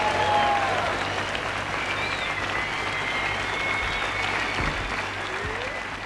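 Concert audience applauding, with thin whistles over the clapping, fading down near the end.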